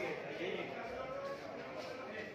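Indistinct voices of people talking in the background, with no clear words.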